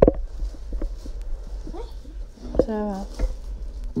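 A knock at the start, then scattered small clicks and a low rumble of handling noise as a phone camera is carried and moved about, under a few short spoken words.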